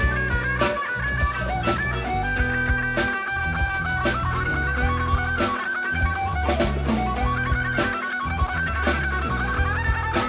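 A live band playing an instrumental passage, with no singing: a guitar melody over acoustic rhythm guitar, a plucked upright bass and a drum kit keeping a steady beat.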